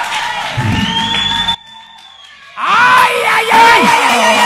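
Church music and crowd: a held steady tone under crowd noise, then a sudden drop to quiet for about a second. Loud singing and shouting voices then break in over the music.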